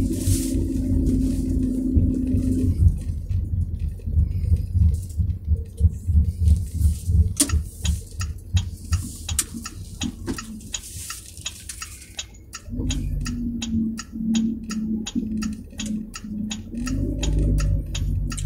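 Inside a moving car: steady low engine and road hum, with a held low drone near the start and again later, and a long run of short clicks or rattles through the middle.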